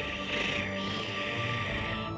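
Suspense film score: low sustained tones with a steady hiss over them.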